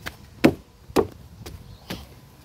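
Three sharp knocks, the first two about half a second apart and the third near the end.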